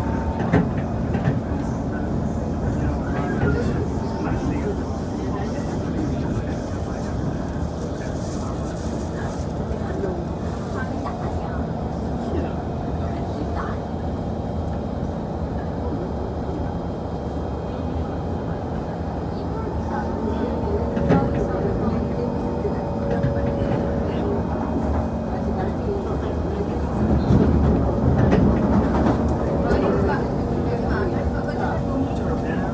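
Inside the passenger car of an SMRT C151 train running on elevated track: a continuous rumble of wheels on rail, with faint steady whines from the running gear near the start and again in the last third. The noise grows louder a few seconds before the end.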